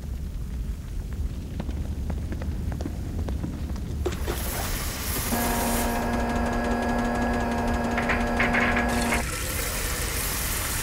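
Cartoon sound effects of an underground works full of boiling cauldrons: a low steady rumble, then a loud rush of hissing steam about four seconds in, with a steady held tone over it for about four seconds that cuts off suddenly.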